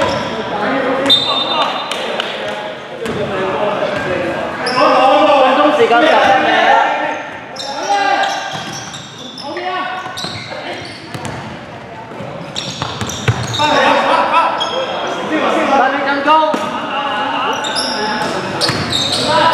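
Basketball bouncing on a wooden gym floor during play, with players' and onlookers' voices echoing in a large sports hall.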